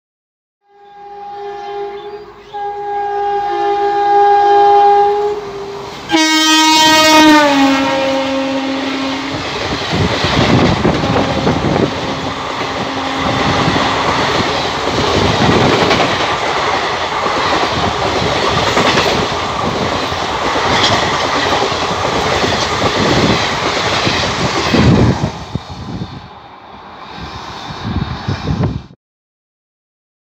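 An Indian Railways WAP-4 electric locomotive's horn sounds a short blast and then a long one as the train approaches. The horn drops in pitch as the locomotive passes about six seconds in. The express's coaches then rush past for over fifteen seconds, with steady wheel clatter over the rail joints, until the train is gone near the end.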